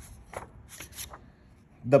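Sheets of stiff printed origami paper rustling and flicking as they are handled and leafed through, in a few short brushes in the first second or so.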